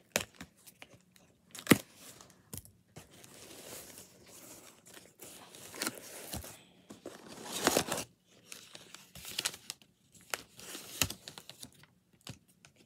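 A cardboard package being opened by hand: cardboard and tape tearing and paper crinkling in a series of sharp rips and rustles. The sharpest rip comes just under two seconds in, and a longer stretch of tearing and rustling comes a little past the middle.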